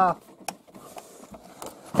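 A large cardboard toy box with flip-open flaps being handled and turned over: faint rubbing and scraping of cardboard, with one sharp tap about half a second in.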